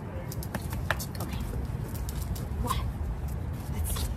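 A few light clicks and taps of a dog's claws and a person's rubber-booted footsteps on a concrete kennel floor, over a steady low rumble.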